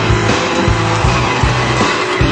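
Rock music with electric guitar and a steady, even drum beat.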